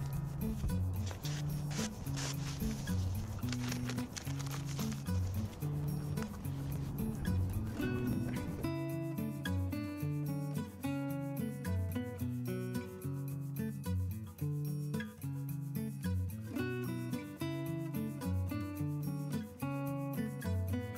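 Background music with a repeating bass line. For the first eight seconds or so a rough layer of noise lies under it, then it cuts away and the music plays on alone.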